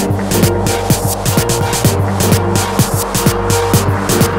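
Dub house track with a steady four-on-the-floor kick drum, about two beats a second, over a bass line and regular ticking hi-hats.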